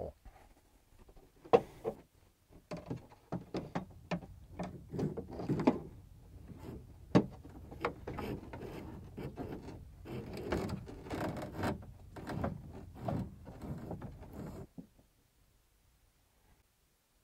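A fish rod with a wiring connector taped to it being worked down inside a 2017 Ford F-150's hollow aluminum tailgate: irregular knocks, clicks and scrapes against the inner panels that stop about a second before the end.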